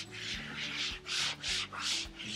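A cleaning cloth scrubbed back and forth over the anti-slip lined shelf of a swing-out corner carousel, in quick strokes about two to three a second.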